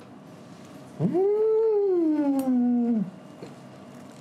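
A man's long, wordless moan of delight at the taste of food, lasting about two seconds: the pitch leaps up, then slides slowly down.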